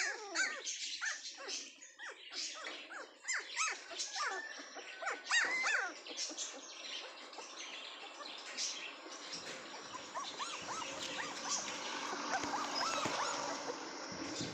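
Young puppies whining and yelping in quick, high-pitched cries, thick and fast for the first six seconds, then fewer and fainter over a steady hiss.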